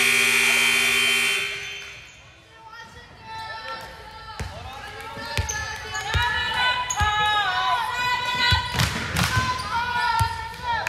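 A long horn blast, as from a gym scoreboard horn, that cuts off about a second and a half in. Then players' voices calling out in a large hall, and a ball bounced on the hardwood court a few times.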